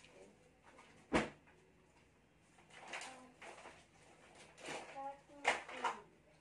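Handling noises as goods are taken out of a cardboard box and set down: a sharp knock about a second in, rustling in between, and another sharp knock near the end, with faint snatches of voices.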